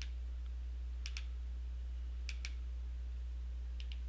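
Button on a remote control pressed three times, roughly a second and a bit apart, each press a sharp double click. A steady low electrical hum runs underneath.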